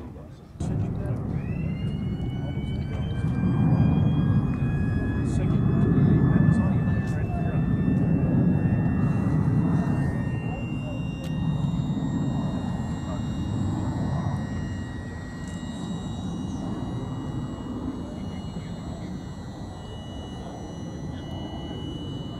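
A B-29 Superfortress engine starter spinning up: a whine that rises in pitch about a second in, then holds steady and breaks off near the end, over a loud low rumble.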